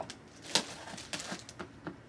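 A few light clicks and taps from handling a cardboard box and its packaging, the sharpest about half a second in.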